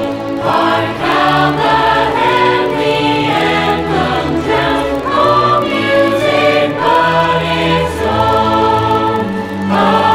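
A mixed choir singing a hymn in sustained chords, accompanied by an orchestra of strings and brass with held bass notes.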